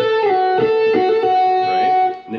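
Electric guitar playing a slow legato lick in B minor: held single notes with quick hammer-on/pull-off flutters between two neighbouring notes, and small slides from one note to the next.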